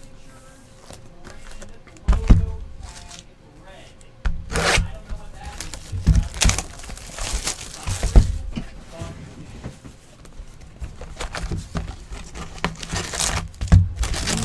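Cardboard trading-card hobby boxes handled and set down on a tabletop mat: a few separate knocks, the loudest about two seconds in, between softer rustling and crinkling of shrink wrap and packaging as a box is opened near the end.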